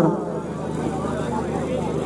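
Spectators chattering around an outdoor kabaddi ground over a steady low hum, with the loud PA commentary paused.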